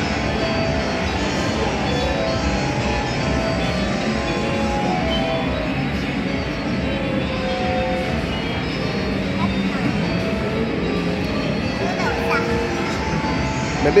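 Several tunes from coin-operated kiddie rides playing at once, steady and continuous, with background voices. A woman's voice comes in at the very end.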